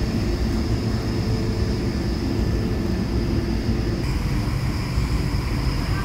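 Cabin noise inside an Airbus A220-300 taxiing onto the runway: a steady low rumble with a constant high whine from its Pratt & Whitney PW1500G geared turbofan engines at taxi power.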